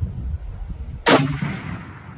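A single shot from a 37XC long-range rifle with a 38-inch Bartlein barrel: one sharp, loud report about a second in that rings out and fades over about half a second. A low rumble runs before the shot and drops away after it.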